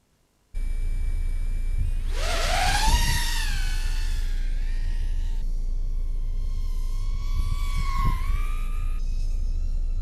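Small FPV racing quadcopter's motors and propellers whining, starting suddenly about half a second in. The pitch sweeps up about two seconds in and then wavers with the throttle, over a steady low wind rumble on the microphone.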